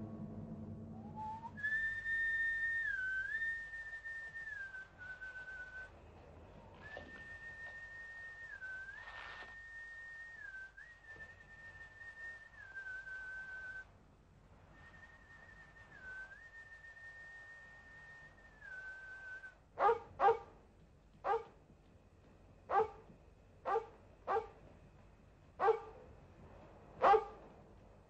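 A man whistling a call to a dog: a clear, high, held whistle that dips briefly in pitch, repeated in several phrases. This is the master's whistle signal that the collie answers. In the last third, a collie barks eight times in short, loud barks.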